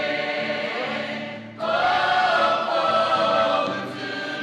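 A mixed choir of men and women singing together without instruments, holding long notes. The sound dips briefly, then a new, louder phrase begins about one and a half seconds in.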